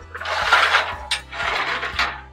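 Aluminum telescoping loading ramp being pulled out to length, the lower section sliding inside the upper with a metal-on-metal scrape. There are two scraping strokes with a short knock between them.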